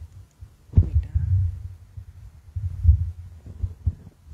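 Handling noise from a live handheld microphone as it is fitted into its stand: dull low thumps and rumbling. There is a sharp knock about a second in and another strong thump near three seconds.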